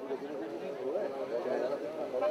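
Faint voices of people talking in the background, no words clear, well below the announcer's loud call just before.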